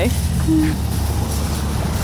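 Metal shopping cart wheels rolling over asphalt, a steady, rattly low rumble.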